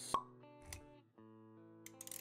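Intro jingle for an animated logo: sustained held musical notes, with a sharp pop effect just after the start and a softer click and low thud a moment later.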